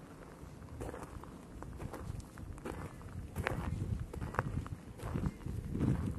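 Footsteps on a loose dirt and gravel trail, irregular steps that grow louder after the first couple of seconds.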